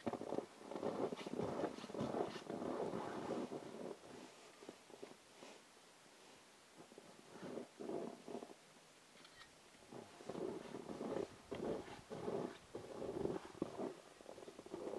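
Irregular rustling and scuffing in bursts, quieter for a few seconds in the middle.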